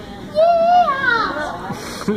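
A young child's high-pitched vocal squeal, held briefly and then rising and falling in pitch, about a second long.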